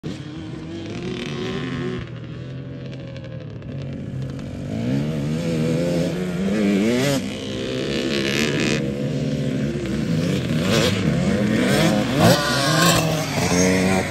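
Several dirt bike engines revving, their pitch repeatedly rising and falling as the riders work the throttle around the track. The sound grows louder from about halfway through.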